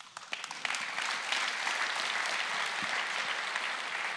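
Large audience applauding, swelling within the first second and then holding steady.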